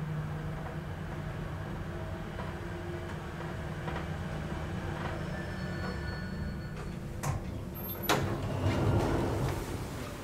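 2009 Schindler 5400 traction elevator car travelling with a steady low hum, then stopping. About seven and eight seconds in there are two sharp clicks, and the car doors slide open.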